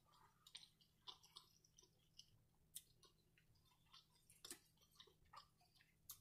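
Very faint chewing: soft, wet mouth clicks and small smacks at irregular intervals, a few a second, with a couple of slightly sharper clicks.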